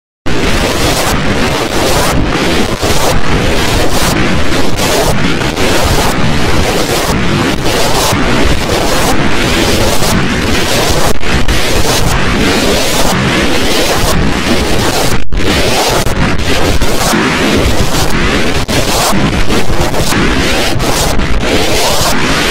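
Logo intro audio mangled by heavy distortion effects into a loud, dense wall of harsh noise across all pitches, chopped by brief dropouts about once or twice a second, with one longer gap about fifteen seconds in.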